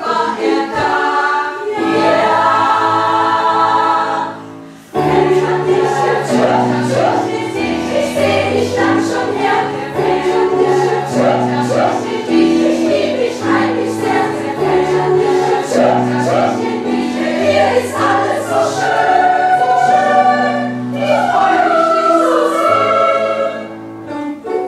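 Mixed choir of women's and men's voices singing in harmony. They break off briefly about four seconds in, then come back in with a low bass line beneath the chords.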